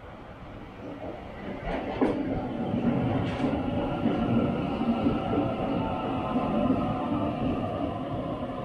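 Sydney Trains Waratah double-deck electric train pulling into the platform. It grows louder over the first two seconds and then runs steadily with a whine, with a few sharp clicks around two and three seconds in.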